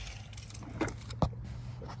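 Car keys being handled: a few light clicks, then one sharp click a little over a second in, over a faint steady low hum.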